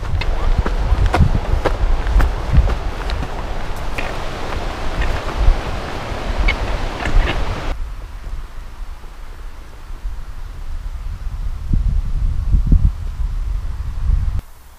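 Footsteps through tall grass, with the stalks swishing and brushing against the walker and the camera, full of small crackles. About eight seconds in this gives way to wind rumbling on the microphone, with a few stronger gusts near the end.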